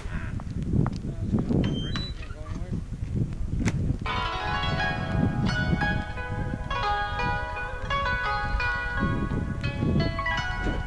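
Background music: a pulsing bass beat, joined about four seconds in by a melody of bright pitched notes.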